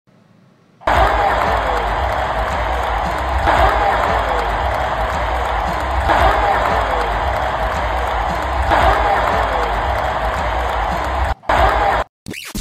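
Loud stadium crowd noise with music over the PA, from a phone recording of the crowd at an NFL game. It starts about a second in and cuts off suddenly near the end.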